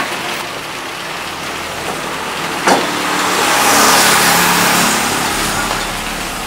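Steady street traffic noise with a road vehicle passing, swelling to a peak about four seconds in and then fading. A single short knock comes just before the swell.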